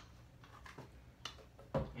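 A few faint, separate clicks and taps of plastic water bottles and cups being handled on a countertop.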